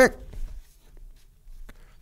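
Loose paper sheets being handled and turned: a few faint, short rustles and crinkles.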